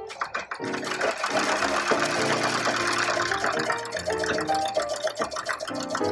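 Sewing machine stitching, a fast, even clatter that starts about half a second in and runs on, under background piano music.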